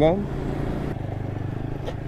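Single-cylinder engine of a TVS Apache RTR 160 4V motorcycle running steadily while being ridden, a low even hum with a fast regular pulse.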